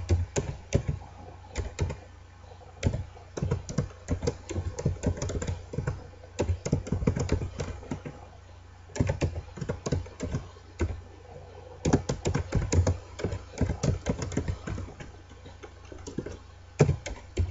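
Typing on a computer keyboard: bursts of quick key clicks broken by short pauses, over a low steady hum.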